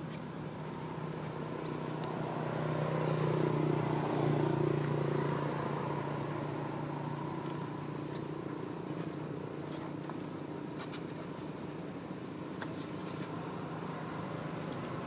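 Low, steady hum of a motor vehicle engine that swells louder a few seconds in and then fades back down, with a few faint clicks later.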